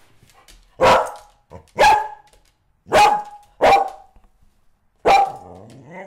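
A dog barking: five short barks about a second apart, the last one drawn out a little longer.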